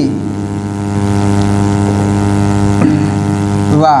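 A loud, steady electrical hum with a stack of evenly spaced overtones, unchanging in pitch.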